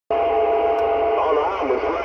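CB radio receiving AM on channel 11: a steady hiss of static with two steady whistling tones over it, and a distorted distant voice breaking through about a second in, typical of long-distance skip signals.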